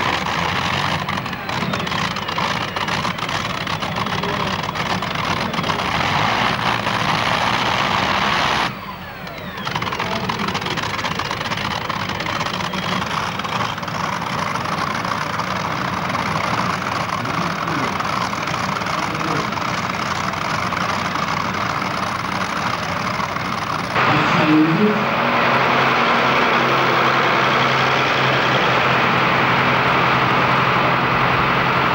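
Modified pulling tractor's engine running loud and harsh at full throttle during a pull. After a cut about 24 s in, an engine runs steadily at lower revs, with a brief blip of the throttle.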